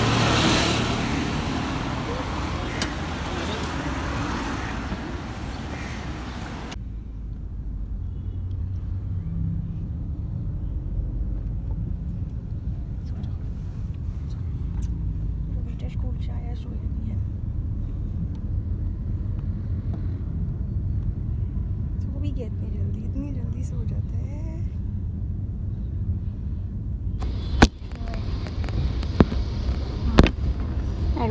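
Steady low rumble of a car's engine and road noise heard from inside the cabin while driving, with faint voices. Before it, the first few seconds hold louder outdoor street noise, and near the end street noise returns with a few sharp clicks.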